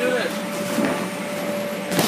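Inflatable bounce house's electric air blower running steadily, a continuous fan rush with a constant hum, under children's voices.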